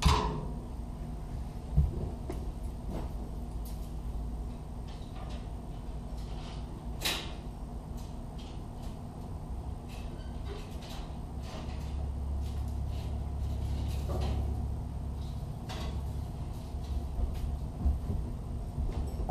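Scattered knocks, clicks and clunks from someone moving about a boat and handling gear, with one louder clunk about seven seconds in. A low hum underneath gets louder for a few seconds in the second half.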